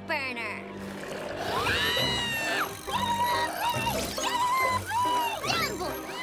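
Cartoon scuffle: a child's high-pitched cries and yells, about five in a row starting a second and a half in, over background music, after a short falling glide at the start.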